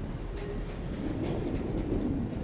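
ScotRail electric multiple-unit train moving along the station tracks: a steady rumble of wheels on rail with scattered light clicks, and a low hum that swells in the second half.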